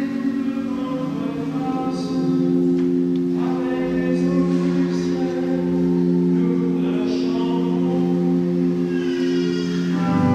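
Liturgical singing by a choir, with long sustained organ chords held beneath the voices.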